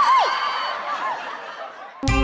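Comic sound effect: a held high note breaks into a falling slide, then a few shorter, fainter dips that fade out.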